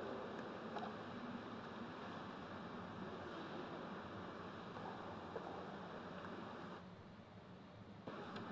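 Faint, steady hiss of a quiet church's room tone, with a faint click or two; the hiss drops away about seven seconds in.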